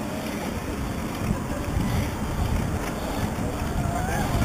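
Wind buffeting the microphone of a handlebar-mounted camera on a moving bicycle: a steady low rumble.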